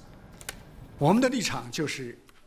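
A quiet second with a few faint clicks, then a man starts speaking about a second in.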